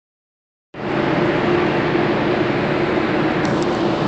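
Steady machinery noise with a faint hum on board a ship, of the kind made by its engines and ventilation fans; it starts suddenly about three-quarters of a second in and holds even, with a few faint clicks near the end.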